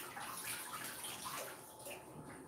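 Water from a kitchen tap running into a sink as measuring cups are washed under it.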